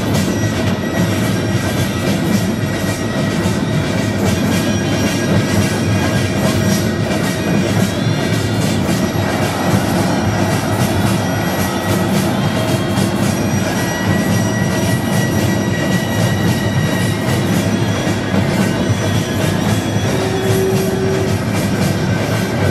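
Loud Korean traditional drum music, with dense, fast drum and gong beats under a few high held tones.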